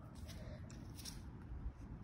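Faint low wind rumble on an outdoor microphone, with a few soft clicks.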